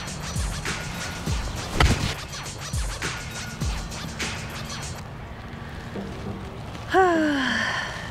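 A golf club striking a ball once in a single sharp hit about two seconds in, over background music with a steady beat. Near the end comes a woman's short falling groan at a poor shot.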